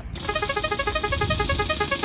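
Electronic music laid over the footage: a fast, even run of short synthesizer notes that starts abruptly.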